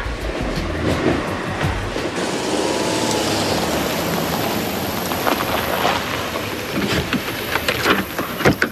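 Background music for about two seconds, then a car driving up, its engine and tyres heard as a steady rushing noise. A few sharp clicks come near the end.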